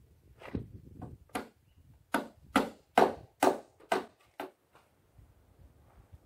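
Hammer blows on a wooden deck board: about ten sharp strikes at roughly two a second, growing louder toward the middle and then tailing off.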